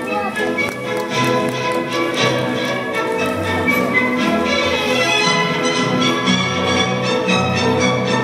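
Orchestral music led by violins, playing French quadrille dance music with a regular beat.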